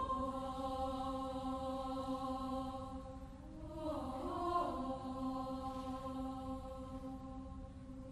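Mixed school choir singing softly in long held chords, moving to a new chord about halfway through.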